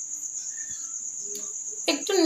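A steady, high-pitched pulsing trill of the kind crickets make, holding unbroken at one pitch.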